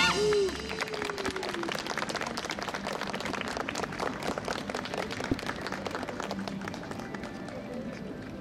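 Audience clapping, a dense scatter of claps that runs on at an even level, right after a brass band's final chord cuts off at the start. A brief sliding tone sounds about half a second in.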